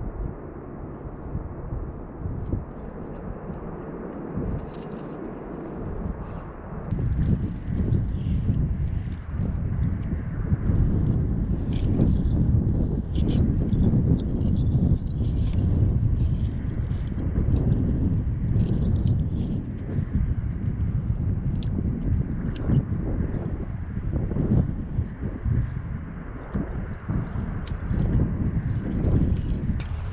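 Wind buffeting the camera's microphone as a rough, gusting rumble that grows stronger about seven seconds in, with faint scattered clicks.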